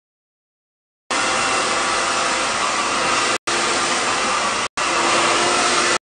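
Hand-held hair dryer blowing steadily while hair is blow-dried. It starts about a second in and cuts out twice for an instant.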